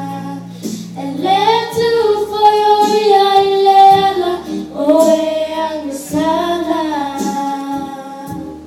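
Young girls singing a song together into handheld microphones, amplified over a PA, in phrases of long held notes that glide between pitches.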